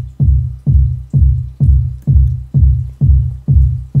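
Programmed electronic kick drum in Reason playing a steady four-on-the-floor beat at 128 BPM, about two hits a second, each hit a sharp attack followed by a deep low boom. The boom is the RV7000 MkII convolution reverb, using a bass-synth sample as its impulse, to thicken the kick at tame settings (dry/wet about 14).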